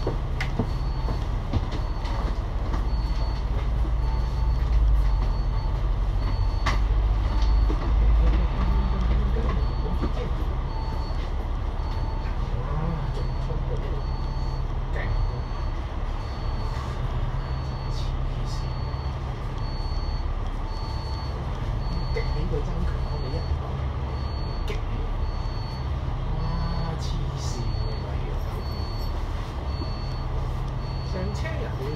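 Interior noise of an Alexander Dennis Enviro500 MMC double-decker bus in slow city traffic: its Cummins L9 diesel engine runs with a steady low hum, swelling briefly about five to eight seconds in as the bus creeps forward. A faint high beep repeats about twice a second through much of it.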